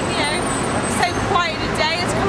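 A woman talking over the steady noise of passing road traffic.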